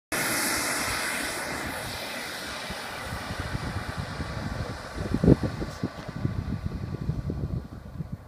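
Radio-controlled Ultraflash model jet's engine running at high power with a hissing whine on its takeoff roll, fading steadily as the plane moves away down the runway. Irregular low buffeting sets in partway through, with a thump about five seconds in.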